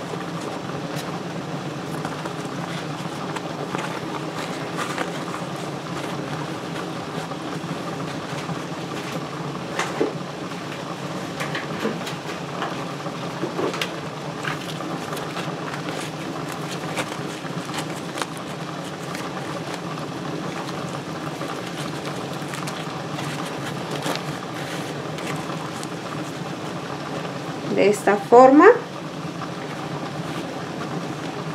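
Water boiling steadily in a tamale steamer pot on the stove, with light rustling of dry corn husks being tucked over the tamales.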